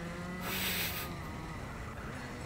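Racing kart's Rotax two-stroke engine running under race load, heard faintly through the onboard camera, with a brief rush of noise about half a second in.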